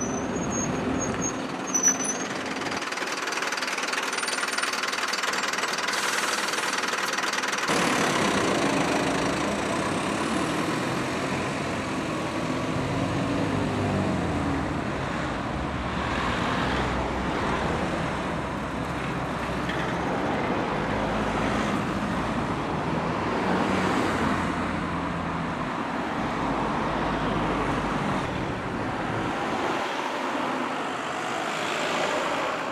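A single-deck bus's diesel engine running as the bus pulls past close by, with one brief sharp noise about two seconds in. After that comes steady road traffic, with car and bus engines running.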